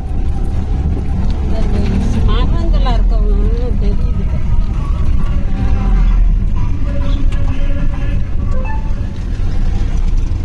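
Auto-rickshaw engine running with a steady low rumble, heard from inside the open passenger cabin as it drives along a dirt road. Voices with wavering pitch sound over it now and then.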